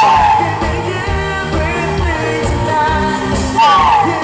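A live pop band playing with bass and electric guitar, with singing over it; a high melodic line slides in pitch at the start and again near the end.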